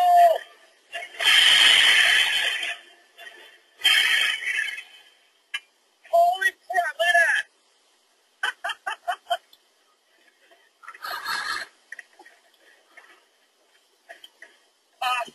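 Replica of Archimedes' steam cannon firing: a sudden loud rush of released steam about a second in, lasting about a second and a half, then a shorter rush, followed by men's voices calling out.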